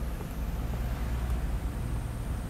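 Steady low hum and hiss of an ATX power supply's cooling fan running while the supply is under a load of about 15 amps.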